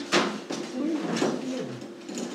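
A sharp knock against a table, a lighter one about a second later, and a low wavering murmur in between, over a steady hum.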